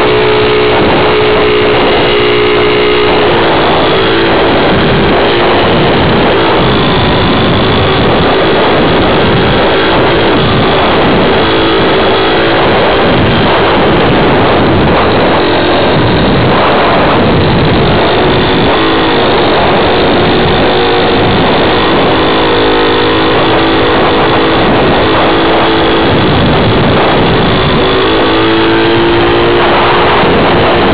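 Motor and propeller of a radio-controlled FPV model plane, heard through its onboard camera, running loud and continuous with wind rush. The motor's pitch rises and falls with the throttle. The tone fades under the wind in the middle stretch and comes back strongly in the last third.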